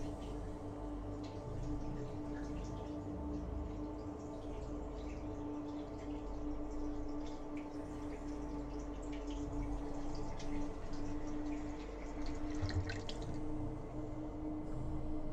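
Water dripping and trickling in a kitchen, small irregular drips that grow busier in the last few seconds, over a steady low hum.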